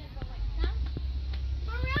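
Steady low rumble with a few light clicks scattered through it, and a high-pitched voice rising and falling in pitch near the end.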